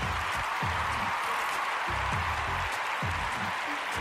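Background music with a low bass line recurring about twice a second under a steady bright wash.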